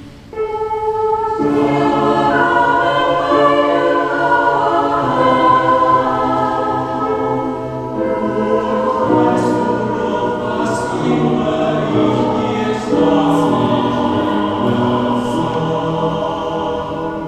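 Mixed choir of men's and women's voices singing a German song in several-part harmony, holding sustained chords. A few voices enter just after the start and the full choir comes in about a second later; crisp 's' consonants stand out in the second half.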